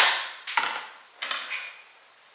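Small plastic make-up palette snapping shut with a sharp click, then two more quick clicks and knocks as it is handled.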